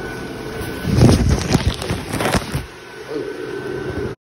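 An inflatable's YF-125 blower fan running steadily, with loud irregular gusts of air buffeting the microphone for about a second and a half in the middle as the camera moves against the inflating nylon fabric.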